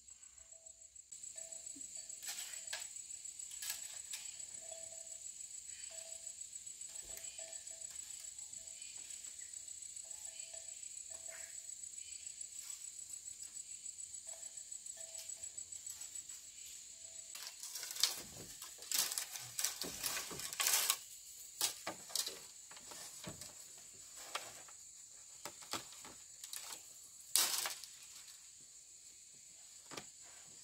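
Insects trilling in a steady high pulse, with a short lower call repeating about once a second through the first half. From a little past halfway, bamboo poles knock and clatter as they are gripped and climbed on, loudest just past halfway and again near the end.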